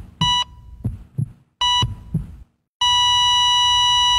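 Heart-monitor sound effect: a low lub-dub heartbeat thump with a short high electronic beep, repeating about every second and a half. Near three seconds in the beep turns into one long steady tone, a flatline.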